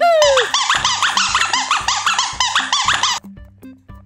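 Rapid high-pitched squeaking, about four rising-and-falling squeaks a second, over cheerful background music; the squeaks stop about three seconds in.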